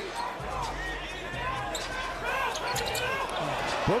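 Basketball court game sound: short sneaker squeaks on the hardwood and a few ball bounces, over a steady arena crowd rumble.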